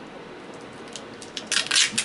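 Low room tone, then near the end a brief scratchy rustle and scrape as a bare 2.5-inch hard drive is turned over in the hands.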